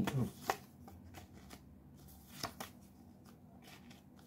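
Stiff playing cards being handled and slid against one another in the hands, giving a few light snaps and rustles, the clearest about half a second in and around two and a half seconds in. A brief hummed note sounds right at the start.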